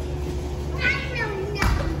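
A child's high-pitched voice calls out briefly about a second in, over a steady low background hum, followed by a single short knock.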